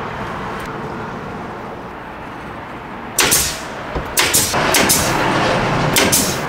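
A tacker (nail gun) fastening pine boards: over a steady background noise, one loud sharp shot about three seconds in, then several quick shots a second later.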